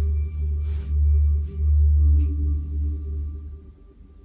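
Low, uneven rumble and bumping on a body-worn microphone as the body leans forward into a fold, dying away near the end as it comes to rest. A faint steady high tone sits underneath.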